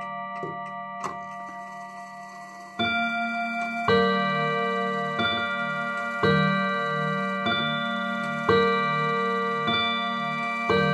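HAC/Junghans Art Deco mantel clock, with a Junghans W77-400 movement, ticking and then striking six o'clock bim-bam on its chime rods. From about three seconds in, hammer strokes come roughly once a second, alternating between two tones, and the rods ring on between strokes.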